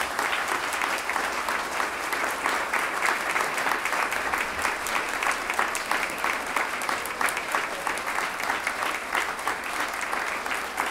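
Large audience applauding: many hands clapping together in a dense, steady ovation after a lecture ends.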